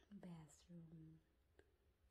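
Very quiet, soft-spoken speech: two short phrases of a voice too faint to make out.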